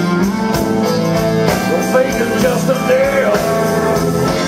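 Live band playing an upbeat rock and roll passage, with drums and electric guitar under a melody line.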